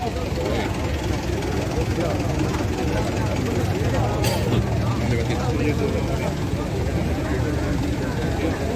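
A heavy engine running steadily at idle, with the chatter of a crowd of voices over it.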